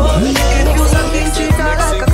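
Dancehall track from a DJ mix playing, with a deep bass line and a steady kick drum about twice a second under a melodic line.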